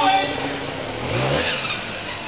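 Trials motorcycle engine revving as the bike climbs over logs, its pitch rising about a second in.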